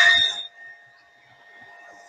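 A 0.75 kW Mac Africa cast-iron-impeller pressure pump starts up with every outlet closed, and the pressure builds. The loud start-up noise dies away about half a second in, leaving a faint steady hum.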